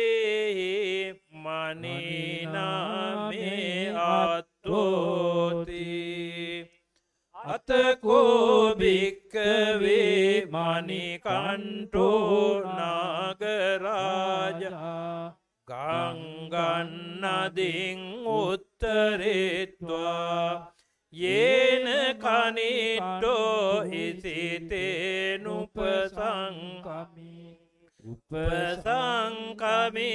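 A Buddhist monk chanting Pali scripture into a microphone in a sustained, melodic recitation tone. The chant runs in long phrases broken by brief pauses.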